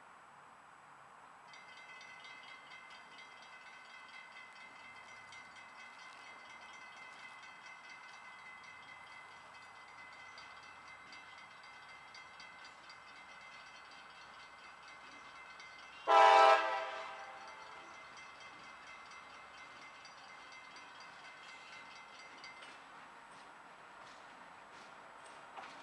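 Freight diesel locomotive's air horn giving one short, loud blast about two-thirds of the way in, ringing out briefly afterwards. Underneath it a faint steady high-pitched whine runs as the train approaches.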